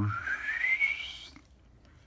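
A man whistling a single note that glides upward over about a second, then fades out.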